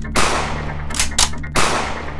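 Film gunfire: a loud shot with a long echoing tail near the start, two quick sharp shots about a second in, then another loud echoing shot.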